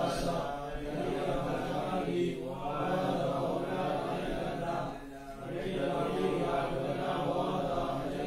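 A monk's single male voice chanting a Pali text in a sustained, intoned recitation. It comes in long phrases, with short breaths about two and five seconds in.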